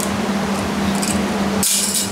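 Shop fans running on high, a steady rushing hum. Near the end comes a brief, sharp burst of hiss or clatter.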